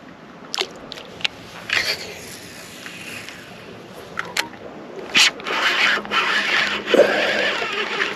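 Handling noise from a fishing rod and baitcasting reel: a few sharp clicks in the first half, then a longer, louder scraping rustle from about five seconds in.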